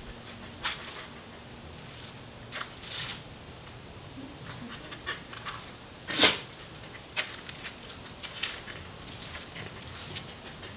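A scent-detection dog panting in short breathy bursts while it searches, with one louder, sharper breath about six seconds in.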